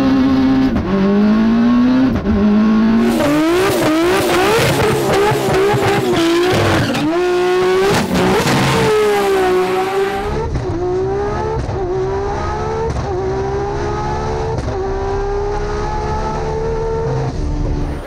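Race-car engines accelerating hard through the gears on a drag strip, the pitch climbing and dropping back at each quick upshift. The sound cuts to a second car about ten seconds in, which runs up through several more shifts.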